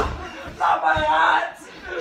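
A person screaming: one long, high yell starting about half a second in and lasting about a second, with a thump at the start.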